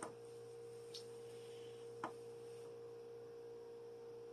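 Faint steady electrical hum with a held tone over light hiss, with two soft clicks about one and two seconds in.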